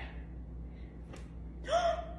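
A person gasps once, briefly, near the end, over faint breathy hiss.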